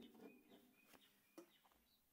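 Near silence, with a few faint short bird chirps and a couple of soft clicks.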